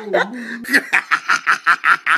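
A woman's closed-mouth hum, then a run of quick giggles, about seven short pulses a second, while eating.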